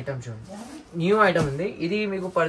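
A voice talking, with the rustle of plastic-wrapped sarees being handled and set down on the floor.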